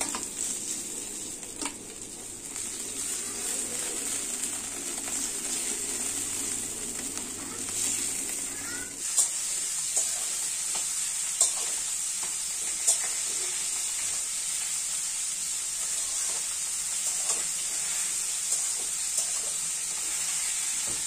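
Small turmeric-coated fish frying in hot oil in a pan, a steady sizzle, with a few sharp clicks from the second half on, such as a utensil against the pan.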